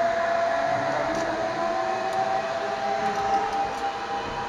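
Zipline trolley pulleys running along the steel cable, giving a steady high whine with a second tone slowly rising partway through, over a rushing noise.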